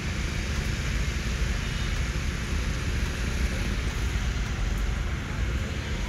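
Steady low rumble with a hiss above it: outdoor background noise, with no distinct event.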